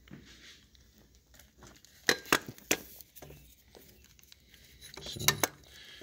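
A few short, sharp metallic clicks and clinks of engine-bay parts being handled by hand: three close together about two seconds in and another pair near the end.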